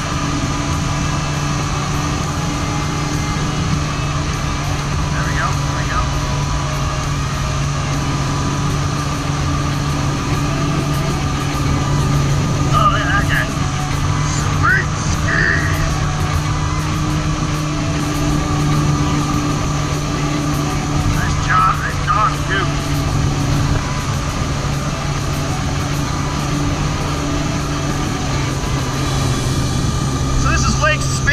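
Kawasaki SXR 800 stand-up jet ski's two-stroke twin engine running at a steady pitch while cruising, with water rushing and spraying off the hull.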